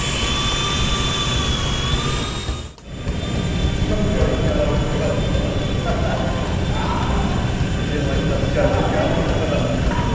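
Small electric RC helicopter (Esky Honeybee) flying: a steady high motor whine that rises slightly in pitch about two seconds in, over a loud low rumble. The sound dips briefly near three seconds, and voices murmur under the hum afterwards.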